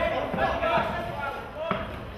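Voices shouting around a boxing ring, with a short thud from the boxers' exchange near the end.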